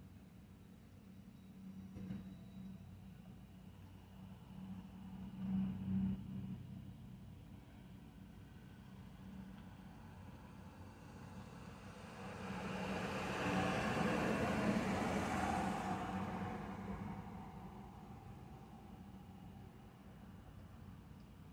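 Steady low engine hum, with a vehicle passing by about two-thirds of the way through, its noise swelling and then fading over about five seconds.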